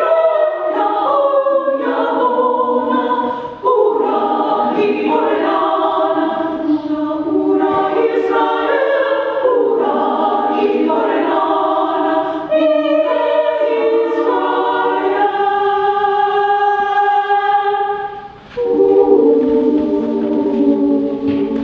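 A choir singing a sustained, chordal piece, with a brief break near the end before the voices come back in.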